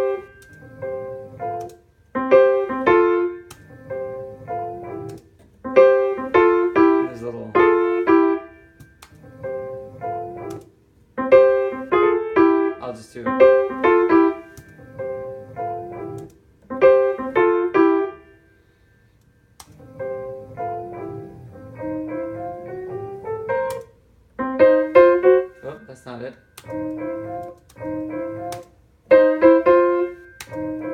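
Short phrases of jazz blues piano with brief pauses between them, a recorded solo played back in snippets and copied on a piano. About two-thirds of the way through, a line climbs chromatically upward.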